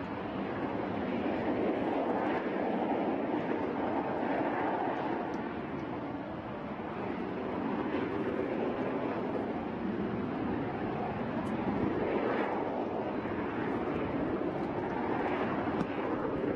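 Steady rushing noise of propellant vapor venting from a line beneath an unlit RS-25 rocket engine on its test stand, before ignition, swelling slightly now and then.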